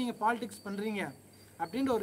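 A man talking, with a cricket's steady high call in the background, heard most clearly in the short pause about a second in.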